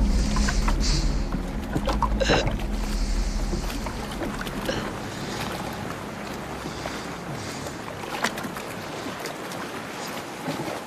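Wind and water around a small boat. A low steady hum fades away over the first four seconds, leaving a hiss of wind and water with a few small knocks.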